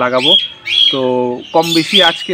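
Birds calling, short high calls repeating irregularly about every half second, over a man talking.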